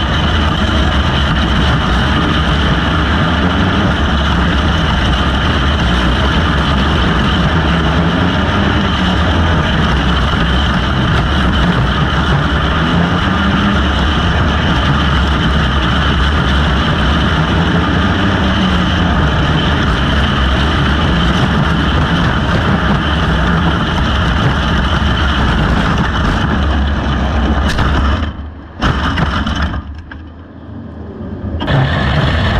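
Outlaw dirt kart engine at racing speed heard from on board, its pitch rising and falling as it is throttled on and off through the corners, with other karts running close by. The sound drops out sharply near the end.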